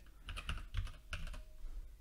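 Typing on a computer keyboard: a short run of quick, light keystrokes entering a word into a search box.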